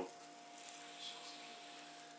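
A faint, short sniff about a second in, a person smelling food to check it is still good, over a low steady electrical hum of room tone.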